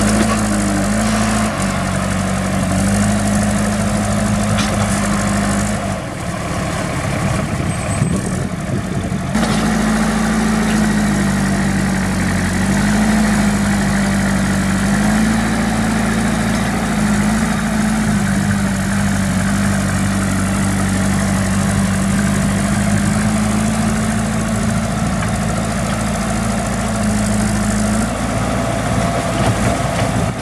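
JCB backhoe loader's diesel engine running steadily under load as the machine is bogged in mud, its engine speed stepping up and down a little several times.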